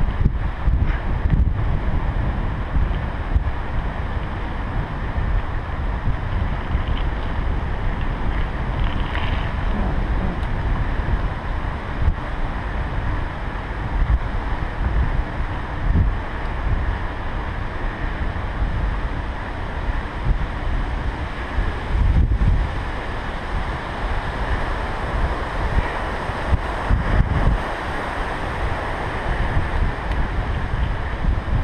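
Wind buffeting the microphone of a camera riding on a moving bicycle: a loud, gusty low rumble that rises and falls throughout, with a steady hiss of tyres rolling on asphalt beneath it.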